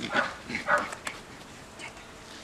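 Small dog barking, two short barks about half a second apart.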